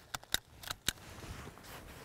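A few quiet, sharp clicks from a hand stapler in the first second as a paper bud cap is stapled around the top bud of a pine seedling.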